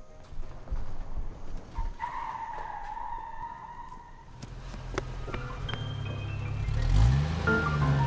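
An SUV's tyres squeal for about two seconds as it pulls away fast, over soft film music. In the second half a deep bass line and the score swell and grow louder.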